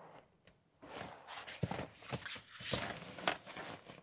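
Faint, irregular rustling of a fabric dog car seat cover and its straps being handled and adjusted over a car's back seat, with a few short ticks.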